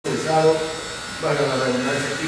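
Indistinct speech in a room: voices talking, too unclear to be made out as words, with a buzzy edge.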